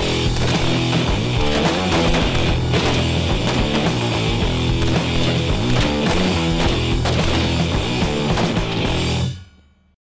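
Rock music with electric guitar at a steady level, fading out quickly near the end.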